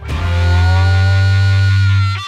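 Intro music sting: a single heavy, distorted electric-guitar chord struck suddenly and held steady, fading out just after two seconds.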